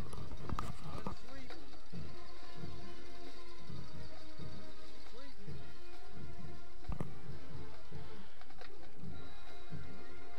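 Band music with a steady low beat, heard under stadium crowd noise, with one sharp knock about seven seconds in.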